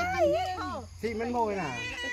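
People's voices talking and calling out, with a gliding, wavering pitch and a short pause about a second in.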